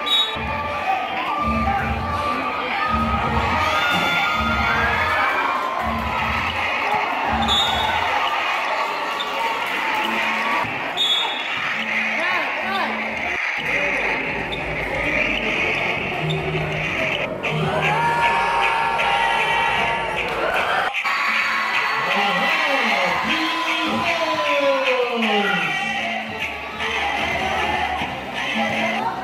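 A basketball bouncing on a concrete court, over the talk and shouts of a crowd of spectators, with music playing in the background.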